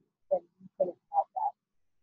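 A woman's speech breaking up into short garbled fragments with dead silence between them, too choppy to follow: the audio dropouts of a poor video-call connection.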